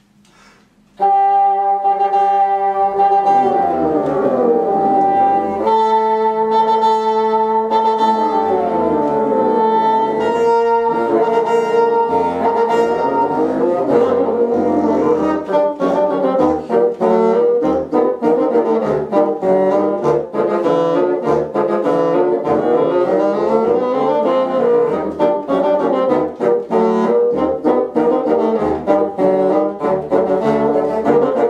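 A small brass ensemble playing a piece in several parts, opening with a sustained chord about a second in, with the lower and upper parts moving against each other.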